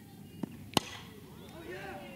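Softball bat striking a pitched ball: one sharp crack a little under a second in, with a fainter click just before it, over quiet ballpark ambience.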